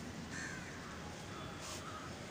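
A bird calling: one call about half a second in, then a few fainter calls, over steady background noise.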